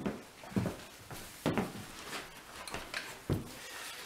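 Handling noises: about six irregular knocks and thumps as the metal lawn mower transaxle is moved and set down on the floor.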